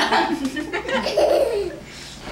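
Laughter close to the microphone, a stretch of laughing that fades near the end.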